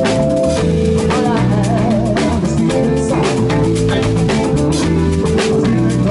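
Live blues band playing: electric guitar with bass guitar, drum kit and long held keyboard chords, at a steady tempo.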